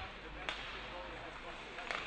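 Ice hockey play heard from the rink: two sharp clacks of stick and puck, about half a second in and again near the end, over a faint arena murmur with distant voices.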